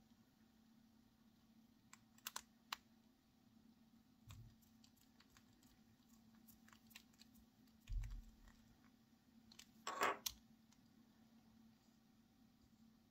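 Faint small clicks and handling noise from the plastic piston mechanism of a TWSBI Eco fountain pen being turned and worked by hand while it is reset to click back into place. Three light clicks come about two seconds in, dull thumps follow at about four and eight seconds, and a short, louder rasping click comes about ten seconds in.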